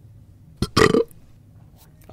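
A man's loud burp, about a second in, just after a short click.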